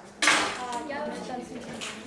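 Voices in a classroom over the clatter and clinking of small hard objects handled on desks, with a sudden clatter just after the start and another near the end.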